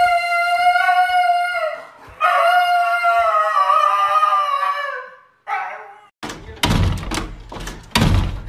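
A husky howling in two long, drawn-out howls, the second sliding slightly lower in pitch, with a short call after them. From about six seconds in, a run of heavy thuds from a dog jumping against a glass door.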